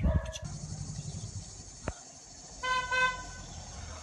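A car horn gives one short, steady toot about two and a half seconds in. A single sharp click comes just before it.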